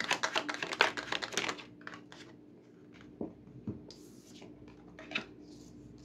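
A small deck of Lenormand cards being shuffled by hand: rapid clicking of cards for about a second and a half, then a few separate soft taps as cards are dealt onto the table.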